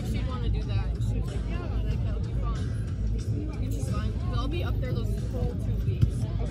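Overlapping distant voices of players and spectators talking and calling, over a steady low rumble, with music playing in the background.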